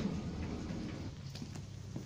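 Footsteps on a paved surface: a few soft steps in the second half, over a low steady rumble of background noise.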